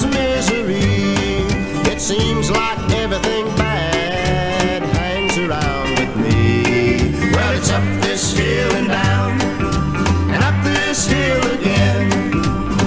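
Country music playing from a 1967 mono vinyl LP: a band with guitar and singing over a steady bass beat.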